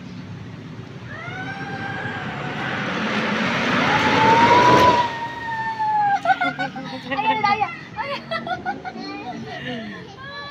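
An inflatable tube sliding down a rainbow dry slide: a rushing noise grows louder and cuts off abruptly about five seconds in, under a long, drawn-out cry that rises in pitch. After that come short excited cries and laughter.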